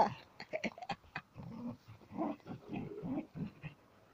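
Border collie making a string of short, low vocal sounds while mouthing and pushing a basketball on grass, after a few light clicks near the start.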